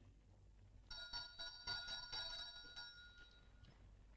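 A small bell jangling with quick repeated strokes for about three seconds, starting about a second in, then dying away.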